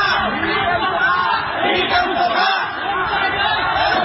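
Speech: continuous talking, with no other sound standing out.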